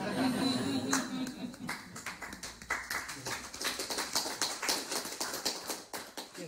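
Audience applauding after a poetry reading: many hands clapping steadily, with a voice heard over it in the first second or so.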